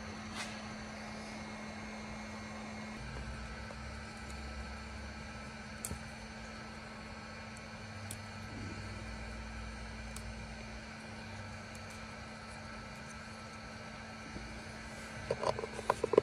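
A steady low electrical hum with a deeper rumble joining about three seconds in, and a few faint clicks from a wiring harness and connector being handled.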